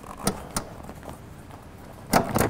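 Two short clicks from the rear headrest of a BMW E36 convertible as it is worked loose from its seat-back mounts by hand, with low handling noise between them.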